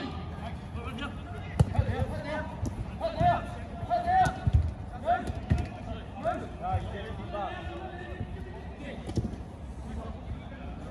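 Short, scattered shouts and calls from players on a five-a-side football pitch, with a few sharp thuds of the football being kicked.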